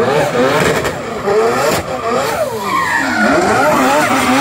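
Four-rotor twin-turbo Mazda 26B rotary engine in a drifting MX-5, revving up and down again and again under tyre screech from the sliding rear wheels.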